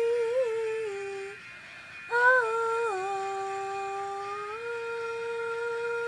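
Unaccompanied girl's voice singing long wordless held notes. The first note wavers and stops about a second and a half in; after a short pause a second long note starts, drops in pitch, and later climbs back up.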